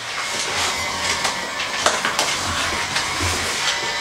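Cardboard shipping box being handled and its packing tape cut open with a knife: scraping and rustling with a few sharp clicks.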